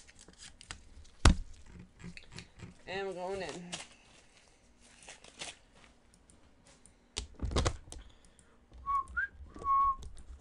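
Trading cards and their plastic holders being handled, with scattered sharp clicks and rustles. A short wavering hum comes about three seconds in, and a brief whistled tune of a few notes near the end.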